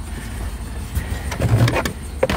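Plastic car interior trim panel being handled and turned over, with scattered clicks and rubbing, over a steady low hum.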